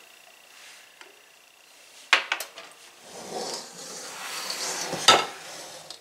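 Utensil clinking twice against a glass mixing bowl, then a soft scraping as the dry flour mixture is stirred, ending in one sharp clink against the glass.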